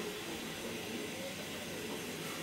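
Steady low hiss with no distinct events: room tone and background noise, with only faint traces of sound under it.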